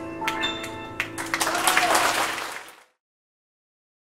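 Grand piano and strings sounding their last held notes, followed by audience applause that starts about a second in and fades out shortly before the end.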